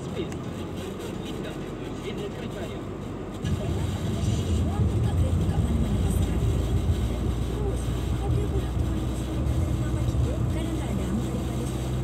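Car cabin sound while driving: a steady engine and road drone that grows clearly louder about three and a half seconds in.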